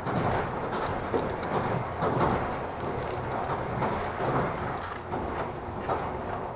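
Running noise of the Kirakira Uetsu train heard inside the carriage: a steady rumble of wheels on rails with scattered clicks and knocks from the track.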